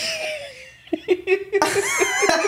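People laughing, in short broken bursts from about a second in, after a brief falling vocal sound at the start.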